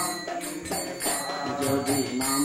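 A man sings a devotional chant over a steady rhythm of hand cymbals, which strike about two to three times a second.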